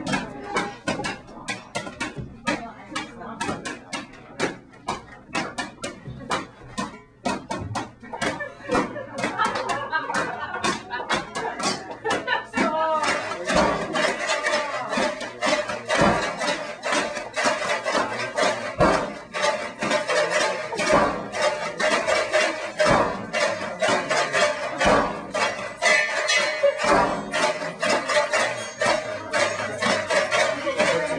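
A busy jumble of knocks and clatter from objects being handled, with voices and music mixed in. It grows denser and louder about ten seconds in.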